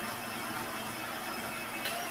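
Countertop blender running steadily as it purées soft roasted tomatillos into green salsa, with a click near the end.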